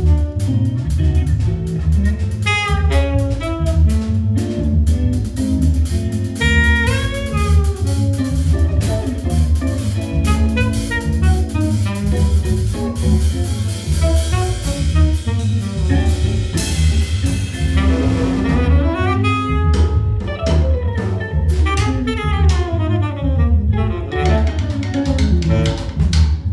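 Freely improvised jazz from a saxophone, electric guitar and drum kit trio: a steady low pulse under busy drum and cymbal hits, with pitched lines bending up and down. In the last third, repeated downward glides take over.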